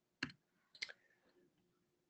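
Two sharp computer-mouse clicks, about half a second apart, against near silence.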